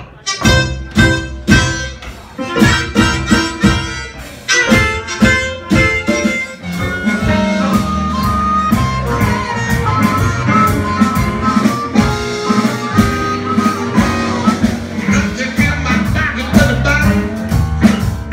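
Live small blues band playing a rag: amplified harmonica and clarinet. It opens with short staccato stabs for the first six or seven seconds, then settles into a steady groove over a low bass line.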